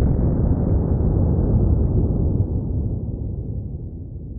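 A .38 Special glove gun mounted on a pistol, fired by contact into a gel head and heard slowed down with the slow-motion picture. It is one deep boom that starts suddenly, rumbles on, and fades slowly over several seconds.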